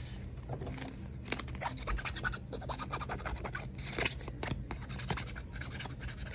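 Trading cards being slid out of a plastic binder sleeve and handled: an irregular run of light scratches and clicks of card against plastic.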